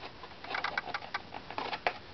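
Quick, irregular scratches and light clicks of hand tools working the inside of a carved wooden violin back plate, as wood is removed to tune a strip of the plate.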